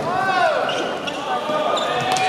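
Volleyball crowd chanting and cheering in a large sports hall, with a sharp smack near the end as the ball is struck.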